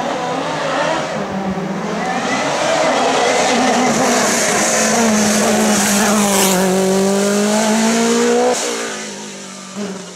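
A white Lancia hill-climb race car drives hard through a bend and past, its engine running loud at high revs. The engine note builds over the first couple of seconds and holds strong, then drops off suddenly near the end and fades.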